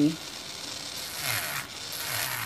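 Electric nail drill with a barrel bit grinding gel top coat off a long acrylic nail: a scraping hiss, with a thin high whine from the drill coming in about a second in.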